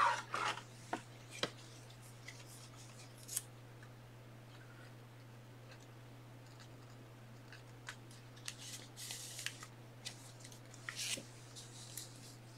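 Plastic card holders being handled on a desk: a few light clicks, then brief scratchy sliding and rubbing noises near the end, over a steady low electrical hum.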